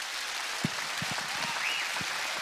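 Audience applauding steadily at the end of a poetry recitation.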